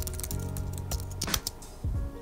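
Computer keyboard typing: a handful of short key clicks, the clearest about a second and a quarter in, over steady background music.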